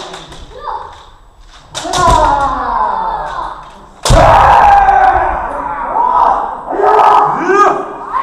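Kendo sparring: drawn-out kiai shouts, each starting with a sharp knock of a foot stamp and bamboo shinai strike on the wooden floor, three times, the loudest about four seconds in, echoing in a large hall.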